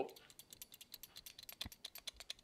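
A Colt 1911 pistol shaken close to the microphone, its parts rattling in a fast run of faint clicks. The rattle is the sign that the parts do not fit together exactly, a looser fit that still functions fine.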